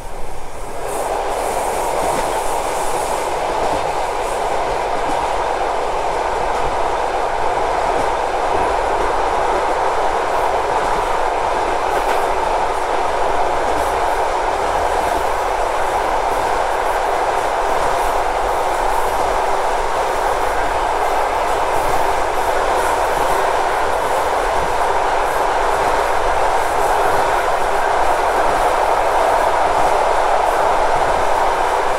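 A freight train of gondola wagons passes close alongside a moving passenger train, with a loud, steady rushing rumble and wheel clatter. The noise sets in suddenly at the start as the wagons draw level, with a brief hiss a second or two in.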